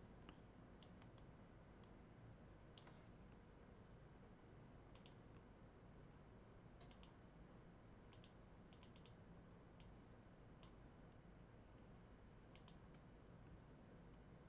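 Faint computer mouse and keyboard clicks over a low steady background hum. There are single clicks, a quick pair about seven seconds in, and short runs of three or four between about eight and nine seconds and again near the end.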